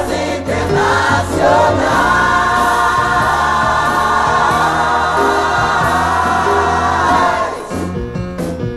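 Music in which a group of voices sings together over accompaniment. The voices rise into one long held chord, which breaks off shortly before the end.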